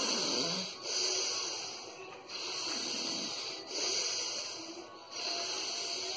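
A man breathing forcefully through the nose in bhastrika pranayama: long, deep, audible breaths in and out, alternating in a steady rhythm of about one stroke every second and a half.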